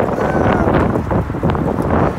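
Wind buffeting an on-camera microphone: a loud, steady low rumble with gusts.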